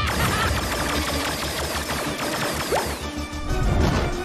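Fast action score mixed with cartoon sci-fi effects: a quick string of falling laser-blast zaps, then a heavy crash near the end.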